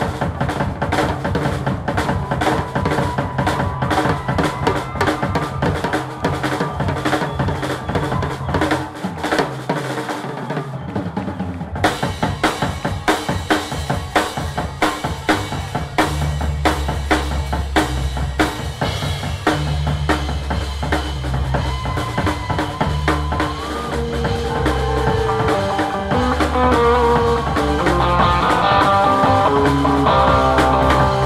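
Live drum kit played busily, with dense snare and rimshot strokes, bass drum and cymbals. About halfway through, a low bass line comes back in under the drums, and near the end the band builds with rising melodic lines.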